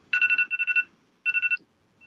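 Telephone ringtone: an electronic trilling ring on two steady pitches, sounding in a longer burst and then a shorter one about a second in.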